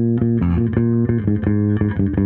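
Four-string electric bass guitar played fingerstyle on its own, with no other instruments: a steadily repeated plucked note that, about half a second in, breaks into a quicker line of changing notes.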